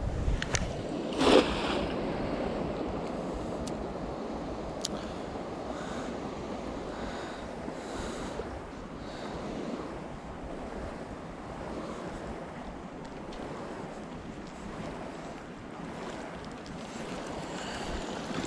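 A cast net splashes into a creek about a second in, followed by a steady rushing noise of water and wind while the net sinks and is drawn back in.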